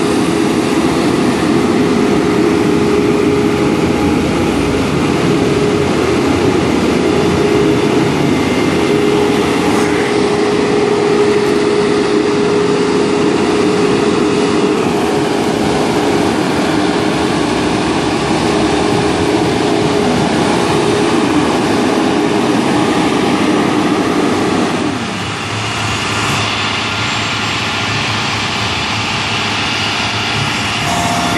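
Diesel engines of emergency rescue trucks idling at close range: a steady engine rumble with a steady hum. About 25 seconds in, the hum drops out and the level dips briefly.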